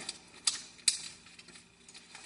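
Paper being handled and creased during origami folding: two short, sharp crinkling clicks about half a second apart, then quiet handling.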